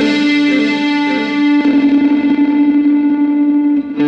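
Electric guitar played through a Southampton Pedals Indie Dream, with its overdrive and delay/reverb both switched on. A chord is struck at the start and left to ring. About one and a half seconds in, a new note comes in and is held until near the end.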